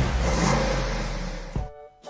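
Closing of a channel intro sting: music with a rushing, rumbling sound effect that fades away, then a short thump just before the narration begins.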